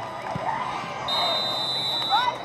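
A referee's whistle blown in one high, steady blast of about a second, starting about halfway in.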